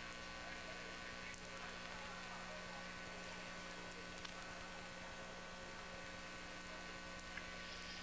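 Faint, steady electrical hum with background hiss.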